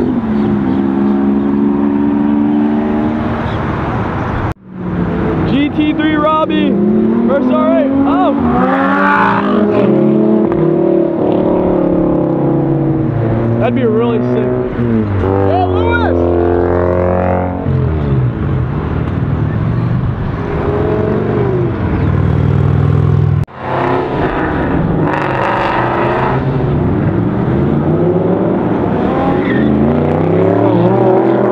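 High-performance cars accelerating hard away one after another, starting with a Lamborghini Aventador, their engines revving up and dropping back as they shift gears, pitch climbing and falling again and again. The sound breaks off briefly twice, about four and a half seconds in and again near twenty-three seconds.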